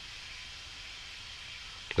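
Steady, even hiss of the recording's background noise, with no distinct sound in it.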